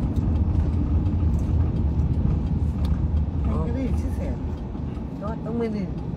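Steady low rumble of a car driving, heard inside the cabin, with short bits of voices in the second half.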